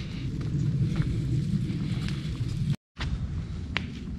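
Wind rumbling on a handheld camera's microphone during a walk along a woodland path, with a few footstep clicks. The sound cuts out completely for a moment near three seconds in.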